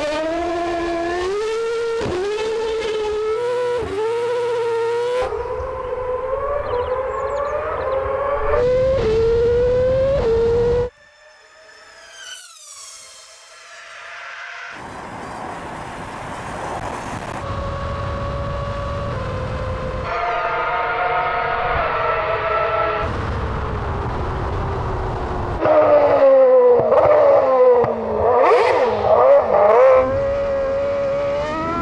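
2012 Red Bull RB8 Formula One car's 2.4-litre V8 accelerating hard from a standing start, its high note climbing and dropping at each upshift, the rear wheels spinning on the slippery surface in first gear. About eleven seconds in the sound drops away suddenly, a high falling whine follows, and the engine returns more distant and steadier. Near the end the car passes close by, loud, its pitch sweeping down.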